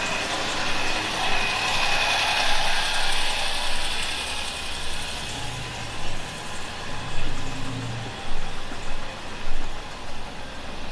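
Street traffic at a city intersection: cars and trucks passing and idling, with a low engine hum in the middle and a few louder surges near the end.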